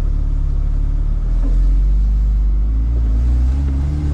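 Engine of a Porsche Cayman race car running as the car moves slowly under hand-operated throttle, heard from inside the cabin, with a steady low hum.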